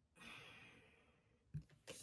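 A woman's soft exhaled breath, faint and short, followed near the end by a low knock and a few faint clicks.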